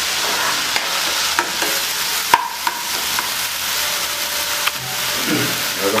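Chopped vegetables in dark soy sauce sizzling in hot oil in a wok while being stirred with a spatula. The spatula clicks and scrapes against the pan now and then, with one sharper knock a little over two seconds in.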